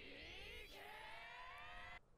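Faint audio from the anime episode being watched: several tones rising slowly together, siren-like, then cutting off suddenly.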